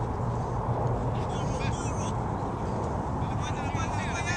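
Distant shouting voices of players and onlookers at an outdoor soccer match, in short high calls about a second in and again near the end, over a steady low rumble.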